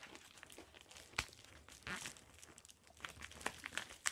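Yellow paper mailer envelope handled and pulled open by hand: faint crinkling and rustling of paper, with a sharp crackle about a second in and another near two seconds.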